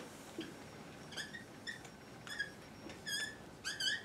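Dry-erase marker squeaking against a whiteboard while letters are written: a series of short, high squeaks, one per stroke, coming faster in the second half.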